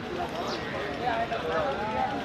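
Indistinct voices of people talking in the background, over steady noise.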